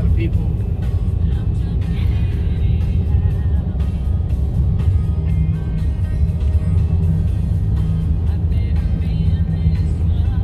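Steady low rumble of a car driving, heard inside the cabin, with music playing over it.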